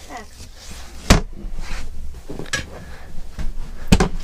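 Hinged wooden lid of an under-seat storage box in a caravan being lowered shut: a sharp knock about a second in, light handling noise, and a second knock near the end as the seat is set back over it.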